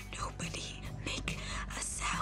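Movie trailer soundtrack: a quiet, low music bed with faint breathy, whisper-like voice sounds over it.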